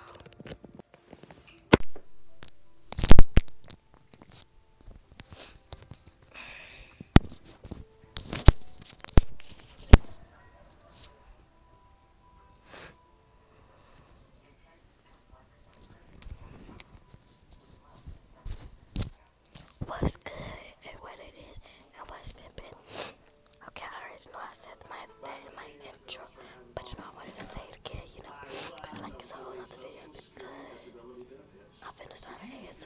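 Loud knocks and clicks of a phone being handled close to its microphone, the loudest about three seconds in, followed by quieter rustling and low whispering.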